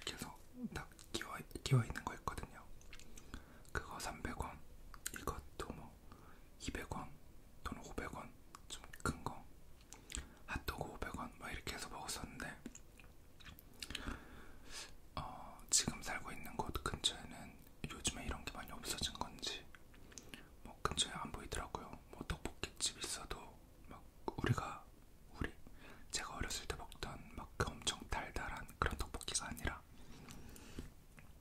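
Close-miked chewing of fried rice cakes (tteok), with many short wet mouth clicks, and whispering between bites.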